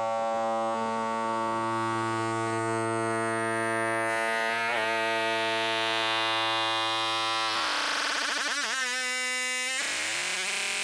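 Doepfer A-100 analog modular synthesizer holding a steady droning tone with many overtones, with a quick pitch sweep near the middle. About three-quarters of the way through the low part of the tone drops out and the pitch wobbles and sweeps up and down.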